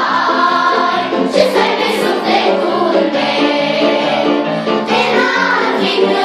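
A children's choir singing a song together.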